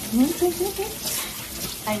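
Kitchen tap running steadily into a sink.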